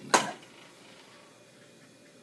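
A single spoken word with a sharp onset at the very start, then faint, steady room noise in a small kitchen.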